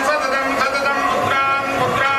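Temple priests chanting Vedic mantras, in held notes at a steady pitch that break and restart every fraction of a second, as a blessing over the seated family.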